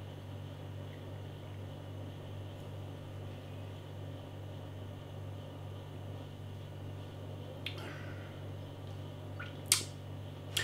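Quiet room tone: a steady low hum, with two faint short mouth clicks near the end as the beer is tasted.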